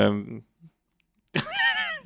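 A man's drawn-out "øh" trails off, then after a short pause a high-pitched, wavering vocal squeal near the end.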